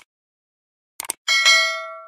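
Mouse-click sound effects, a click right at the start and a quick double click about a second in, then a bright notification-bell chime that rings on in several tones and fades out.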